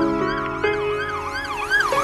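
UK drill instrumental beat with a siren-like wail rising and falling about three times a second, getting louder towards the end, over sustained synth notes.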